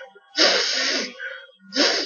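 A person's breath blown out hard in two hissing bursts, a long one about half a second in and a shorter one near the end.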